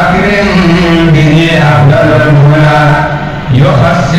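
Male voices chanting an Islamic dhikr in sustained, drawn-out lines over a low held tone, with a short break about three and a half seconds in before the chant picks up again.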